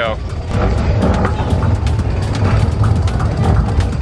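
Roller coaster train setting off and running along its track: a steady, loud low rumble with wind buffeting the microphone.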